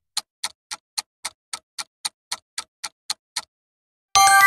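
Countdown-timer ticking sound effect, sharp clock-like ticks at about four a second, stopping about three and a half seconds in.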